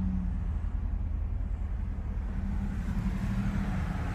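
Steady low hum inside the cabin of a 2012 Nissan Rogue, its 2.5-litre four-cylinder idling.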